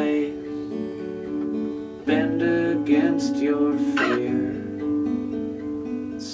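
Steel-string acoustic guitar played solo, chords strummed and left to ring, with a fresh louder strum about two seconds in and more around three and four seconds.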